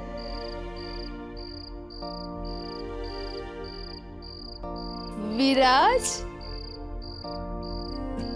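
Crickets chirping in a steady pulse about twice a second over soft, sustained background music chords. About five seconds in, a voice briefly sweeps sharply upward, the loudest sound here.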